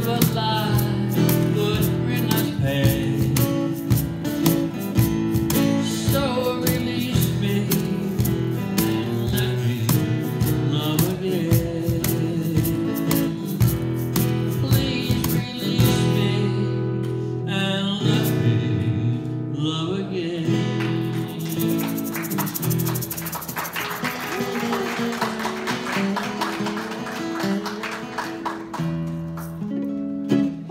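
Live country song: strummed acoustic guitar and a man singing, with an egg shaker and drumstick keeping a steady beat that drops out about 16 seconds in. The last part thins out, with a high hissing wash over the guitar.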